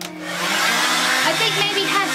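Handheld hair dryer switched on, its blowing noise swelling over about the first half-second and then running steadily.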